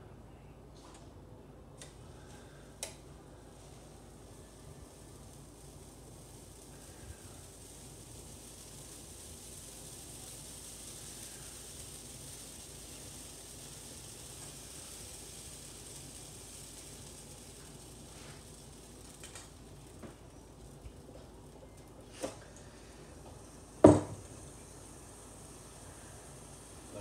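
Faint, steady sizzle of waffle batter poured onto the hot plates of a Black & Decker waffle maker. A few light clicks come through it, and there is one sharp knock about two seconds before the end.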